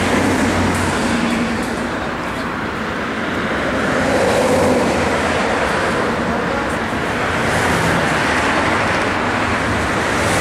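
Motorway traffic noise, a steady rush of passing vehicles that swells about four to five seconds in and again near the end.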